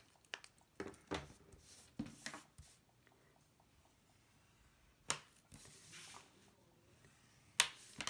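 Handling of black cardstock and double-sided score tape: scattered rustles and clicks as the tape strip is pressed down with a bone folder. Two sharp snaps, about five seconds in and near the end, the second the loudest.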